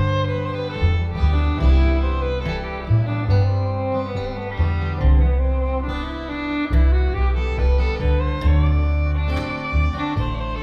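Instrumental passage with no singing: a fiddle bows a sustained melody over guitar and a walking line of deep upright bass notes that change every half second to a second.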